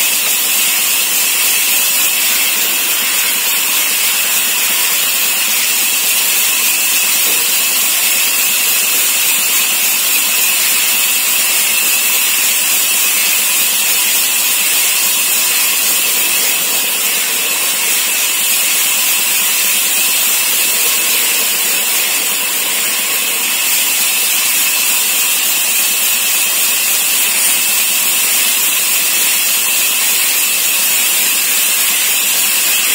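Large band saw running and cutting a wooden cricket-bat blank as it is fed through the blade: a loud, even, unbroken noise.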